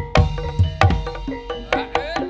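Javanese gamelan-style dance music: drum strokes with short ringing notes from struck tuned metal instruments, about two to three beats a second.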